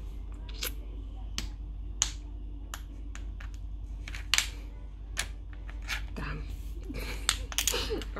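Irregular sharp clicks close to the microphone, roughly two a second, over a low steady hum, with a faint voice briefly near the end.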